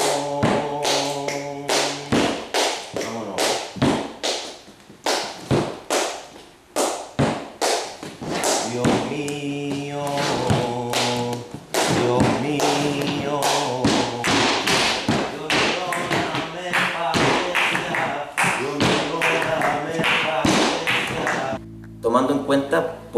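Flamenco music built on a rapid run of sharp percussive strikes, with held sung or instrumental notes over them. The strikes thin out for a moment about a third of the way in, then come back thick and fast.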